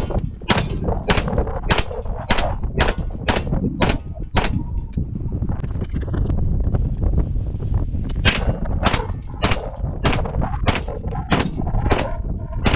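9mm DIY carbon-alloy Mac-style upper firing quick single shots, about two a second, in two strings of seven or eight shots with a pause of a few seconds in the middle.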